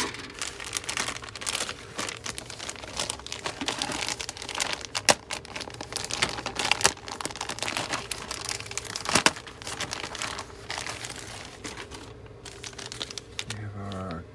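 Thin clear plastic bags around plastic model-kit sprues crinkling and rustling as they are handled and lifted out of the box, with a few sharper clicks about five and nine seconds in.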